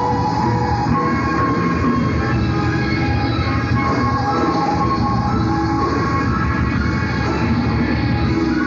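Live rock band playing an instrumental passage: held, sustained notes over bass and drums, steady and dense throughout.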